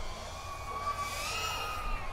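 Diatone GT R349 FPV drone flying on its stock propellers, heard at a distance as a steady high motor-and-propeller whine. The pitch rises a little about a second in as the throttle goes up, then eases back near the end.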